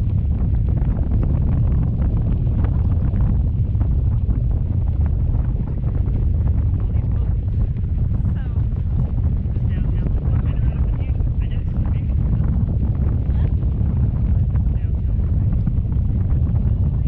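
Wind buffeting the microphone of a camera hanging under a parasail in flight: a loud, steady low rumble.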